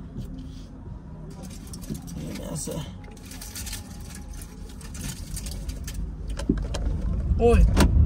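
Car engine heard from inside the cabin, running with a steady low hum, then growing louder with a deeper rumble over the last couple of seconds as the car pulls away.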